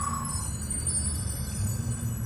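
Logo-sting music: a shimmering high chime held over a low sustained rumble, with a gliding tone from the lead-in fading out about half a second in.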